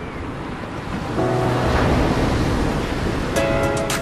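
A large ocean wave breaking and crashing in the surf, the rush of whitewater swelling about a second in and easing off near the end. Music plays alongside, with held tones and sharp percussive hits near the end.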